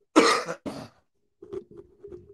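A man coughs twice, sharply, into his hand, then breaks into soft chuckling about halfway through.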